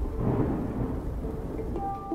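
Heavy wind-driven rain in a violent storm, with a deep low rumble beneath it.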